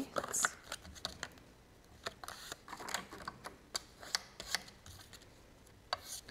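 Cardstock being folded along its score lines and rubbed down with a bone folder: faint, irregular light taps, scrapes and paper rustles.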